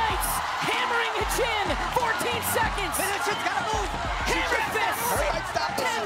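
Several voices shouting excitedly over one another, with music underneath.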